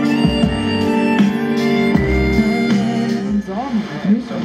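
Music playing from the loudspeaker of a Grundig 3012 valve radio, with its EL12 output valve driving the speaker. The radio is tuned to a broadcast station, and a brief gliding vocal line comes in about three and a half seconds in.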